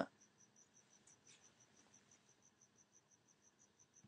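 Near silence, with a cricket chirping faintly: a short high chirp repeated evenly, about six times a second.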